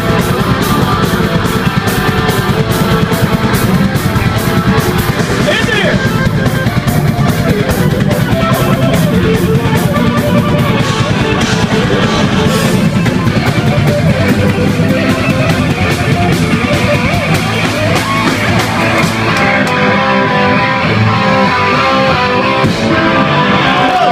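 A live rock band playing a loud, fast heavy-rock song on electric guitars and drums. The fast, cymbal-heavy beat thins out in the last few seconds.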